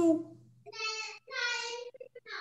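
A high-pitched voice, like a child's, holding two steady sung notes, the second a little longer than the first, quieter than the lecture speech around it.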